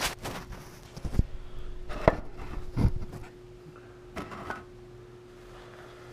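Camera handling noise as the camera is picked up and repositioned: a string of knocks, taps and scuffs, the sharpest about a second and two seconds in, dying away after about four and a half seconds. A steady faint hum lies underneath.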